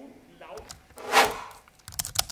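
Faint clicks of a computer keyboard and mouse, and about a second in a short, loud rush of noise, with more sharp clicks near the end.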